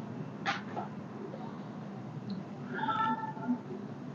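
A sharp click about half a second in, then one short high-pitched call near three seconds in, over steady low room noise.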